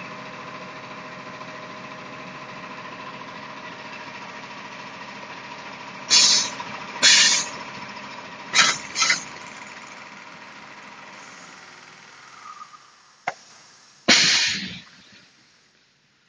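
Perlite mortar packing machine running with a steady hum, broken by short, loud hisses of compressed air about five times, at roughly one-second spacing. The hum dies away near the end.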